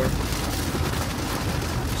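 Steady road and engine noise inside a moving car's cabin, an even rushing hum with a low rumble underneath.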